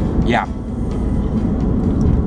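Steady low rumble of a car's engine and tyres on the road, heard inside the cabin while driving.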